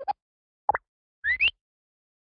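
Three short pops in quick succession, each a brief upward glide in pitch, the last one a double pop; a plopping sound effect over otherwise silent audio.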